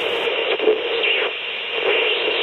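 Loud, steady hiss of television static, swelling and easing a little.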